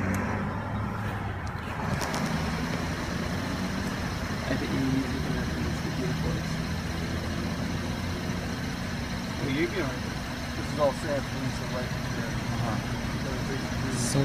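Car engine idling with a steady low hum, with faint indistinct voices a little after halfway through.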